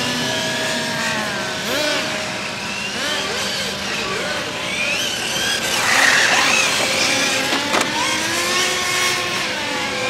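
Electric 1/8-scale RC on-road car's brushless motor whining, its pitch rising and falling as the throttle is worked on and off through the corners. About six seconds in there is a louder hiss of tyres as the car turns past close by.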